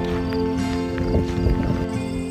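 Background music of slow, held chords, with a few short knocks about halfway through.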